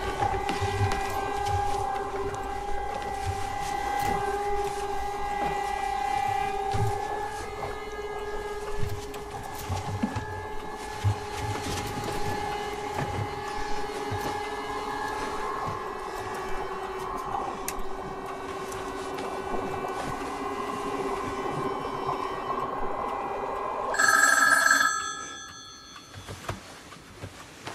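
Steady low droning tones, then about two seconds before the end a loud telephone ring cuts in.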